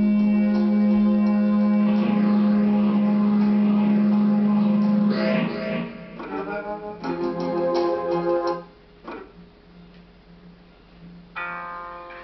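Amplified electric guitar: a steady held tone drones for about the first five seconds. Then a few short chords ring out between about six and nine seconds in, and another chord sounds near the end after a lull.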